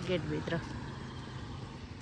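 A voice says "gate", then a steady low background rumble carries on with no distinct events, quieter than the talk around it.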